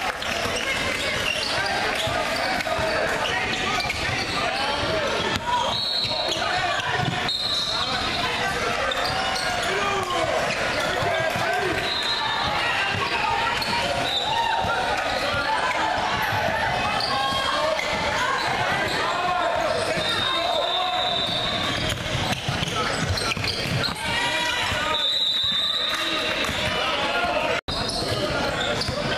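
Basketball game in a gym: overlapping voices of players and spectators throughout, a basketball dribbling on the hardwood court, and several short high-pitched squeaks.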